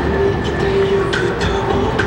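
Busy city street noise: a steady, loud rumble of passing heavy traffic with a held hum over it.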